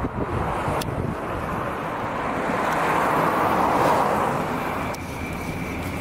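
City street traffic: a passing car's tyre and engine noise swells to a peak about four seconds in and falls away about a second later.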